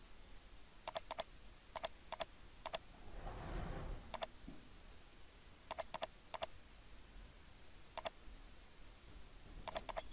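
Sparse clicks from a computer mouse and keyboard while letter spacing is adjusted in layout software: about a dozen irregular clicks, some in quick pairs. A brief soft rustle comes about three seconds in.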